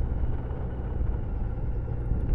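Motorcycle running at a steady road speed: a low, even engine rumble with road and wind noise.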